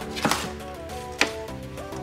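An aluminum boat hatch lid being slid out of its plastic wrapping: two short, sharp handling knocks and crinkles, one about a quarter second in and a louder one just after a second, over steady background music.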